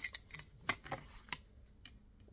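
Yellow acrylic quilting ruler set down and shifted against foundation paper on a cutting mat: a few light, uneven clicks and taps with some paper handling.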